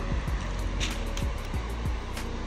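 Steady rush of sea washing on a shingle beach, with a low rumble on the microphone, under quiet background music.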